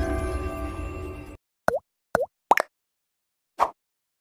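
The tail of a channel-intro music jingle fades and cuts off, then four short cartoon 'plop' sound effects, each a quick downward swoop in pitch, sound against dead silence, the last one nearly a second after the others.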